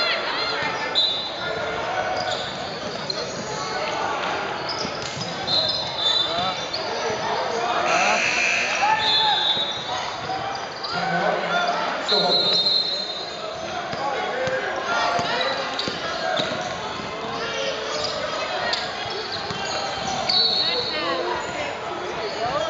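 Basketball dribbled and bouncing on a hardwood gym floor during a game, with players and onlookers calling out.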